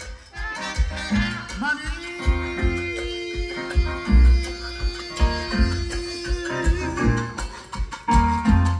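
A live Latin band playing salsa: a steady beat of bass and percussion, with one long held note through the middle.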